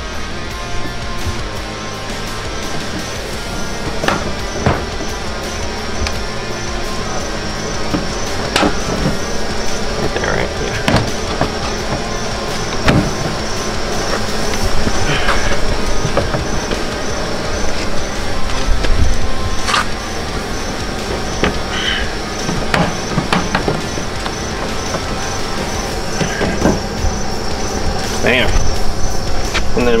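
Background music at a steady level, with a few short clicks over it.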